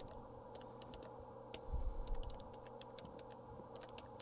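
Faint, irregular clicks of electronic calculator keys being pressed as a sum is keyed in, with a few louder, duller knocks about halfway.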